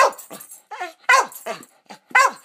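Shetland sheepdog–German shepherd mix barking a few short, sharp barks, each falling in pitch, to answer a spoken sum of two plus two; the loudest barks come at the start and about a second in.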